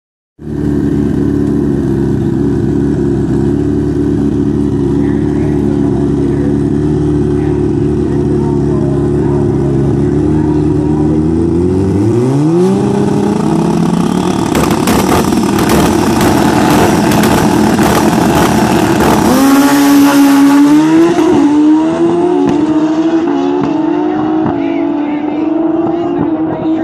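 Two Pro Street drag-racing motorcycles idling at the starting line, revving up about halfway through, then launching at full throttle. The note climbs in steps as they pull away, and it eases off near the end as they head down the strip.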